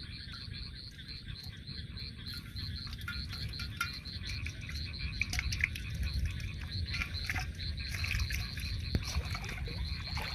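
Frogs calling steadily in a rapid pulsing chorus, about four pulses a second, with scattered clicks and rustles from handling a bamboo fish trap over an aluminium pot.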